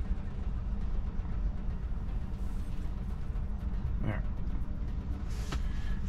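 Steady low rumble of idling city traffic heard from inside a stopped electric car's cabin, with a single short spoken word about four seconds in.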